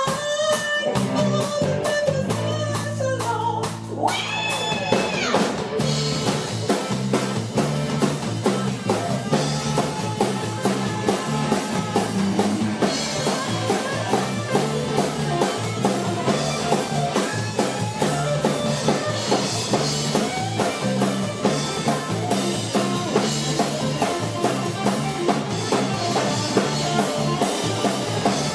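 Live rock band playing an instrumental passage on electric guitar, bass guitar and drum kit. A guitar line falls over held bass notes, a note glides sharply upward about four seconds in, and the band then settles into a steady, driving groove with an even drum beat.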